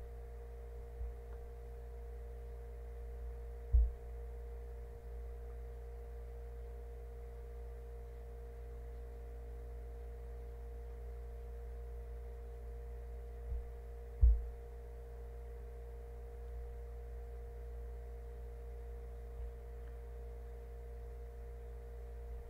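Steady electrical hum, with two short, soft low thuds about four and fourteen seconds in.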